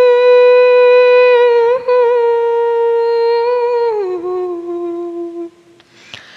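A woman humming one long, steady note with no accompaniment, briefly broken near two seconds in. About four seconds in it slides down to a lower note, which fades out about a second and a half later.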